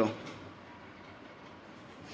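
A man's spoken word trails off at the very start, then only faint, steady background noise with no distinct event.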